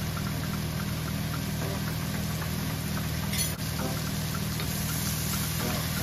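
Sliced mushrooms frying in a skillet on a gas hob: a steady low hum under a faint, even sizzle, with one brief tap about three and a half seconds in.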